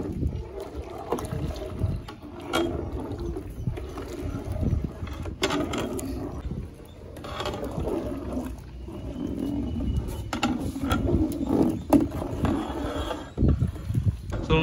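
A long-handled metal ladle stirring and scraping the bottom of a large aluminium pot of thickening milk payasam, in irregular scrapes and knocks. The milk is kept moving so it does not catch and burn on the bottom.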